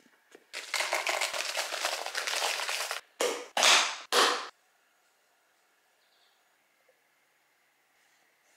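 Dried chillies rustling and crackling against a clear plastic airtight storage container for about two and a half seconds. Then three loud snaps about half a second apart as the container's locking lid is pressed shut.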